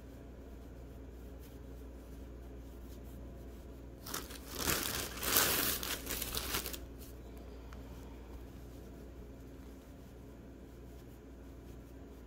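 Clear plastic bag of stuffing crinkling as a hand reaches in and pulls out a handful, a burst of about three seconds starting about four seconds in.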